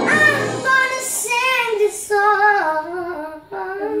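A young female voice singing a slow melody, holding and bending long notes with vibrato.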